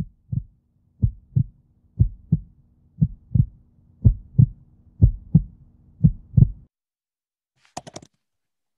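Heartbeat-like sound effect for a logo sting: low double thumps, lub-dub, about once a second over a faint steady hum, stopping a little before the end. A quick run of three sharp clicks follows just before it ends.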